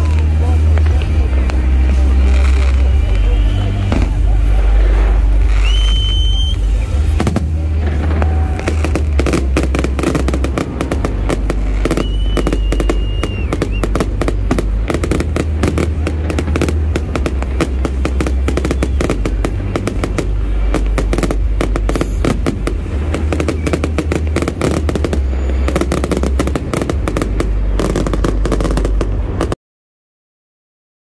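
Aerial fireworks bursting and crackling in a dense, rapid volley that thickens about eight seconds in. Loud bass-heavy music and crowd voices run underneath, and the sound cuts off abruptly just before the end.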